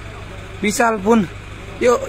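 Men's chanted calls of 'yoyo', one about half a second in and another starting near the end, over the steady low hum of an engine running, likely the mobile crane's.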